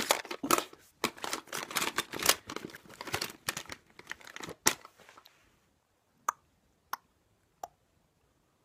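Close rustling and crackling for about five seconds, then three separate sharp clicks about two-thirds of a second apart.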